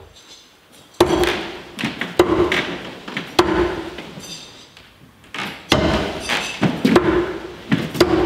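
Throwing knives striking wooden log-round targets, several sharp thunks each followed by a short ringing as the blade sinks in.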